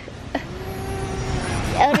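A little girl starting to cry after hurting herself: one long, thin held wail that swells, over a steady rushing background noise, with a parent's "Oh" at the end.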